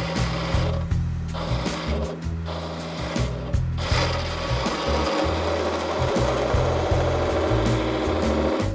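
Skewchigouge turning tool cutting a spinning wooden spindle on a wood lathe, bevel up with light engagement: a steady rasping cut. It breaks off briefly about one, two and three and a half seconds in as the tool eases off, then runs unbroken from about four seconds on.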